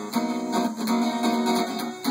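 Acoustic guitar strummed, with a few strokes and the chords ringing on between them.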